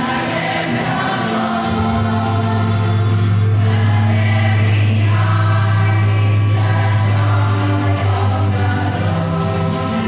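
A rondalla ensemble of ukuleles and other plucked strings playing a gospel chorus medley, with the group singing along. A deep low note is held for several seconds in the middle.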